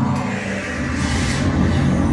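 Lift cab travelling up its shaft: a steady low rumble, with a rushing whoosh that builds about a second in.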